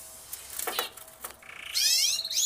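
A bird calling: in the second half a buzzy call begins and rises sharply in pitch, after a few faint clicks.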